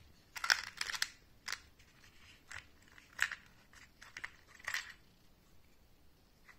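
Small rotary-tool accessories (grinding stones, cutting discs and metal collets) clicking and clattering against each other and the plastic organizer box as they are handled: a quick cluster of clicks about half a second in, then single clicks about once a second.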